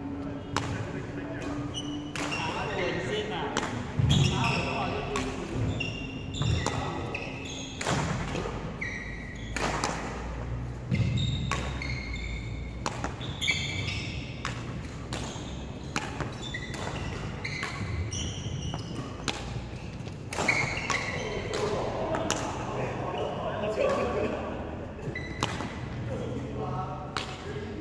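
Badminton drill on a wooden court: repeated sharp racket hits on the shuttlecock, with footfalls and short high shoe squeaks on the floor, echoing in a large hall.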